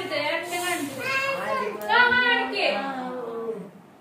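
A child's voice singing in high, sliding phrases with short breaks, dropping away near the end.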